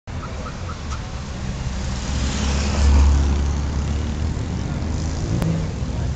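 Car engines running at idle with a deep, steady rumble that swells to its loudest about three seconds in, as the cars line up for a street-race launch.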